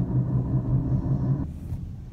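Steady engine and road hum heard inside a moving minivan's cabin, cutting off suddenly about one and a half seconds in, leaving a quieter low rumble.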